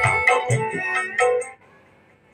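Music played from a Bluetooth receiver through a homemade transistor amplifier, built from a dead CFL lamp's transistor, into a 10-inch woofer with a tweeter. The music cuts out suddenly about one and a half seconds in, leaving only a faint hiss.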